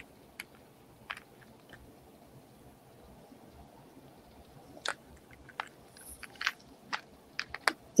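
Faint, scattered small clicks and taps, a few at first and coming more often toward the end.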